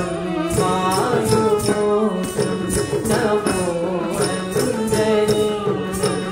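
Live Carnatic music accompanying Bharatanatyam dance: a melody with sliding ornaments over a steady drone, with regular percussive strokes keeping the beat.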